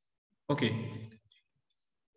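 A man says a single "okay", followed by a few faint, short clicks of a computer mouse.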